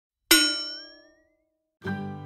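A single bright metallic ding struck once, ringing out and dying away over about a second, with one overtone sliding upward in pitch as it fades: a logo sound effect. Plucked-string music starts near the end.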